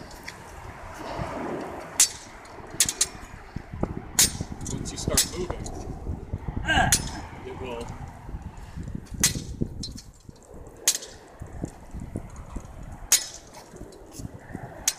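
Sword blade striking a swinging hanging pell target: sharp metallic clinks at irregular intervals, about nine in all, the loudest about two seconds in.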